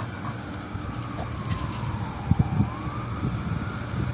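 An emergency-vehicle siren wailing, its pitch sliding slowly down and then back up, over a steady low rumble. A few low thumps come just past halfway.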